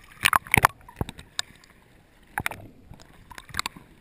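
Water sloshing and splashing against a handheld action camera held at the surface of shallow water. Short splashy bursts come twice near the start and once about two and a half seconds in, over a low watery hiss.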